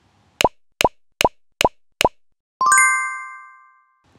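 Edited-in cartoon sound effect: five quick pops in a steady rhythm, about 0.4 s apart, each dropping in pitch. Then a bright chime rings out and fades.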